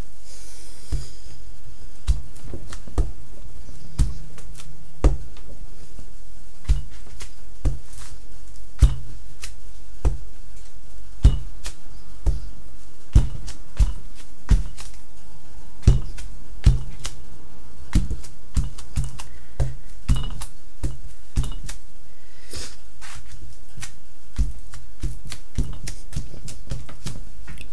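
Wood-mounted rubber stamps tapped on an ink pad and pressed onto a padded car windshield sunshade: irregular soft thumps and clicks, one or two a second, over a steady low hum.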